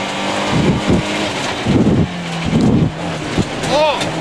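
Citroen C2 rally car heard from inside the cabin, its engine running at a steady high pitch while it drives on gravel, with several short louder bursts of low road noise as it goes over the rough surface. A brief shout comes right at the end.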